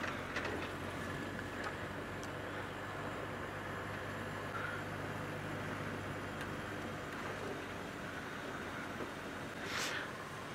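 Engine and drivetrain of an open safari game-viewing vehicle running steadily as it drives along a dirt track, a low even hum under road noise.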